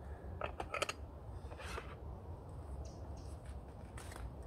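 Small metal camp cookware being handled: a few light clicks and knocks in the first second, then a brief scrape as a steel billy can is set over the lit stove.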